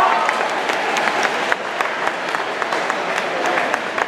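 Crowd of spectators at a swim meet applauding, with many sharp claps and some voices, easing slightly about a second and a half in: applause at the finish of a relay race.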